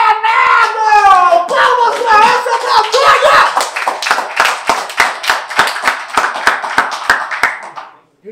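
A small group of people clapping and shouting in a small room. Voices shout for about the first second and a half, then fast, uneven handclaps take over and gradually die away near the end.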